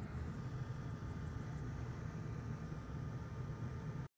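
Steady low hum with a light hiss, with no distinct event: workshop background noise.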